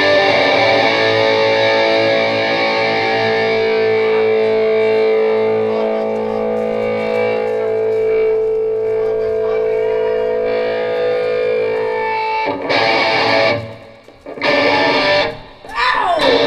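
Distorted electric guitar played live through an amplifier. A held chord rings steadily for about twelve seconds, then gives way to a choppy riff broken by two short gaps.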